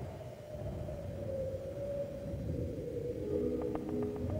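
Atmospheric intro of a pop-folk song: a low rumbling drone with a single held tone above it. About three seconds in, a soft sustained synth chord comes in, with a few light ticks.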